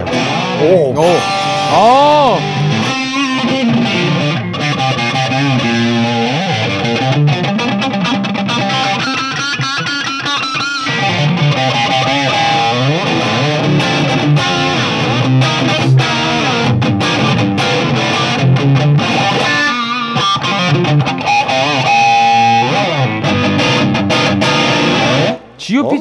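Spear RT-T electric guitar with GVP pickups played through a Marshall JCM2000 on high gain: distorted lead playing with string bends and vibrato, which stops shortly before the end.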